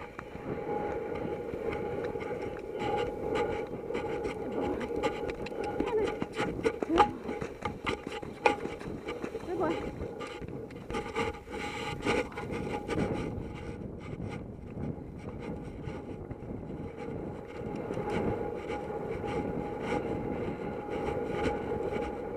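A horse cantering across turf, heard from the rider's helmet camera. Wind noise runs throughout, with irregular thuds and clicks from the hoofbeats and tack and a steady hum.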